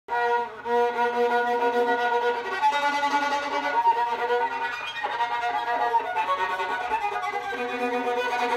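A violin bowed by a child, playing a simple tune: a short first note, a long held note, then a string of shorter notes changing pitch every half second or so.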